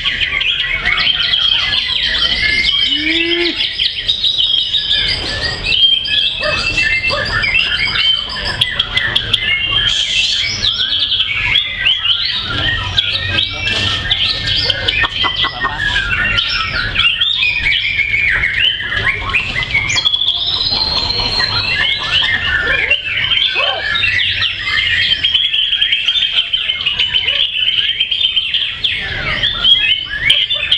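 White-rumped shamas singing, several overlapping in a dense, unbroken stream of varied high whistles and rapid repeated notes.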